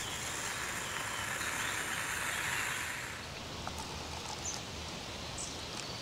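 Soto Windmaster gas camping stove burner hissing under a moka pot, cut off about three seconds in; a few faint clicks follow.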